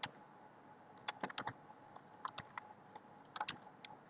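Typing on a computer keyboard: quick keystrokes in several short runs, with pauses of about half a second to a second between them.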